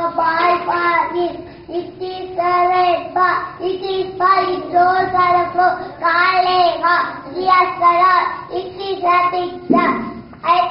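Young children singing in short phrases with held notes.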